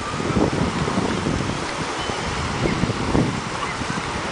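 Wind buffeting the microphone, uneven and gusty, over the wash of small waves breaking at the shoreline.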